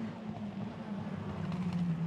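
TCR touring race car's engine running at speed on the circuit: one steady note that drifts slowly lower in pitch.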